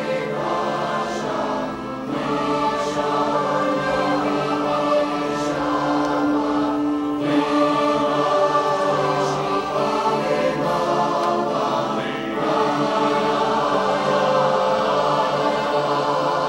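A mixed choir singing a sustained, hymn-like piece with held notes in several voice parts.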